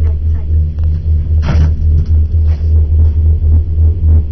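Low, unevenly pulsing rumble inside a moving gondola cabin, with a brief hiss about a second and a half in.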